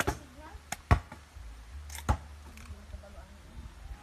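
Cacao pod being struck against a rock to crack it open: four sharp knocks, the loudest about a second in.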